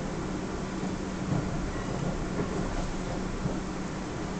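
Inside a Class 444 electric train running slowly over the station approach tracks: a steady rumble with a constant low hum, and one louder thump about a second and a half in.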